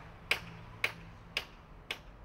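Light, sharp taps, evenly spaced at about two a second, from work on a scaffolded stone memorial under renovation, over a faint low hum.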